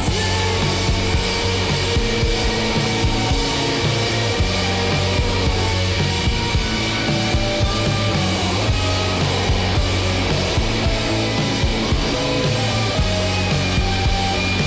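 Garage punk band playing live without vocals: distorted electric guitars, bass and drums, with one guitar played with a metal slide, its pitch gliding up and down the neck.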